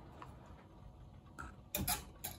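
Glass jars being handled on a wire pantry shelf: light rubbing and a few small knocks, the loudest cluster near the end.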